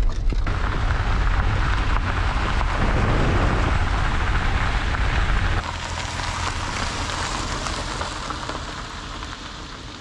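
Rain and wet road noise heard from inside a moving car on a wet gravel road, a steady hiss over a low rumble. About five and a half seconds in it switches to rain falling outdoors without the car's rumble, quieter and fading slightly.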